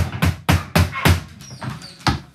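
A fast, even run of heavy thuds, about four a second, which weakens after about a second and stops, with one last thud near the end.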